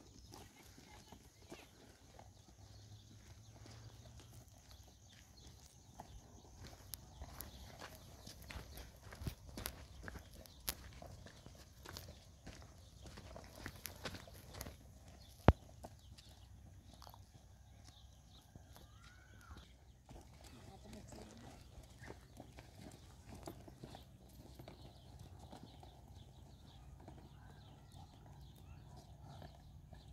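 Faint, irregular footsteps of several people walking on a stony dirt track, with one sharp click about halfway through.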